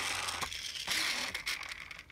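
Vintage Takara Godzilla friction toy running across a table top, its friction motor and sparking mouth mechanism grinding with a rough rasp that fades as it slows. A few small clicks come near the end. The mechanism is a little rusty.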